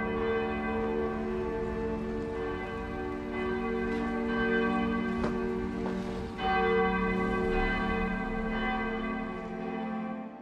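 A church bell ringing, its many overlapping tones dying away slowly and renewed by a fresh strike about six and a half seconds in.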